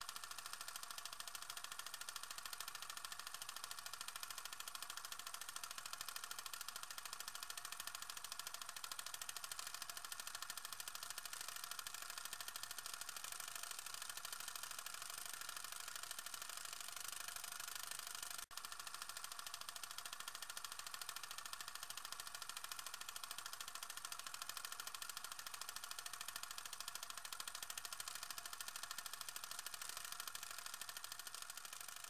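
Faint, steady film-projector clatter with hiss, a fast even mechanical rattle that breaks off for an instant about halfway through.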